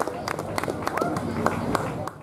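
Scattered clapping from a small audience tailing off after a poem, with people talking over it.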